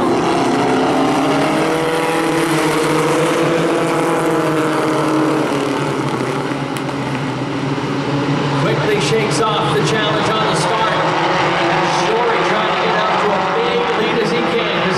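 A pack of four-cylinder pro stock race cars accelerating together on a green-flag restart. Many engines rev at once, rising in pitch over the first few seconds as the field gets up to speed, then running on at full throttle down the straight.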